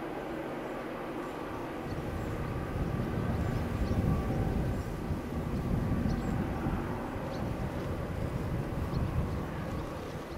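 A distant train's low rumble, swelling about two seconds in, with faint steady engine tones above it. The train is approaching but not yet in sight.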